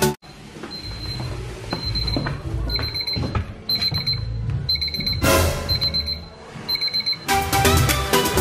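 Tablet countdown timer alarm going off at zero: a high beep about once a second, each beep a quick cluster of pulses, over low handling rumble. A short loud rush of noise comes about five seconds in. Background music cuts out at the start and returns near the end.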